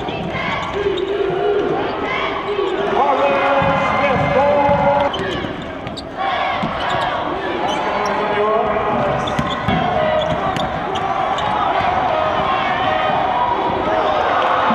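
Live sound of a basketball game in play: the ball being dribbled and sneakers squeaking on the hardwood, over a steady din of voices from the crowd and the benches.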